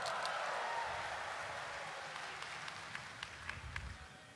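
A large audience applauding, fading away over a few seconds, with a few last scattered claps near the end.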